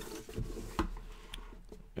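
Faint handling of a cardboard game box: a few light taps and rubs of cardboard as the box's slide-off picture sleeve is moved aside.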